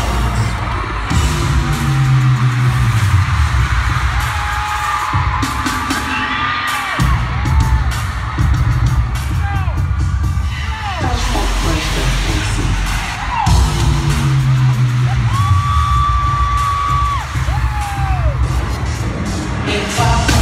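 Live pop concert music played loud over an arena sound system: a heavy bass beat with bass sweeps falling in pitch, which come round twice, under melody lines that bend in pitch.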